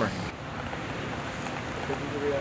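Steady hiss of background noise with no distinct events, after a man's voice trails off just at the start.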